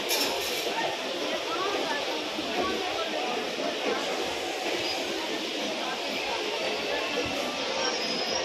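Busy railway-station ambience: many voices chattering at once, mixed with the steady sound of a long rake of passenger coaches rolling slowly past.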